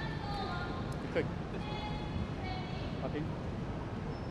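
Steady background hum of an indoor badminton arena between rallies, with a few brief high squeaks about half a second and two seconds in, and a man saying "okay" about a second in.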